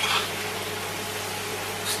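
A steady low hiss with a constant hum, and a brief spoon scrape against the pan right at the start.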